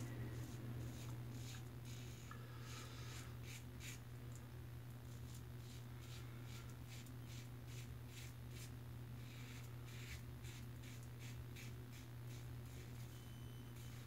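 Safety razor (Fine Accoutrements World's Finest Razor, a Gillette New-style design) scraping through lathered stubble on the first pass, a run of short, raspy strokes in uneven clusters. Under it runs a steady low hum.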